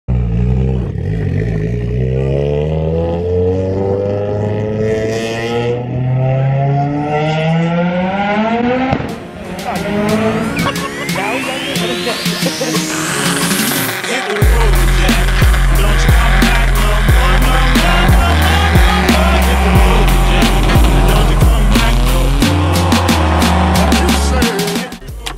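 A car engine revving, its pitch climbing over the first several seconds. A sharp click follows, then music: a rising electronic sweep and, from about halfway through, a heavy bass beat.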